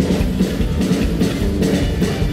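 Live band playing loudly: electric guitar, upright double bass and drum kit in a driving, steady beat.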